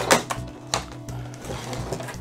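Clear plastic packaging and a cardboard backing card clicking and crinkling as they are handled, a few sharp clicks spread through, over a steady low hum.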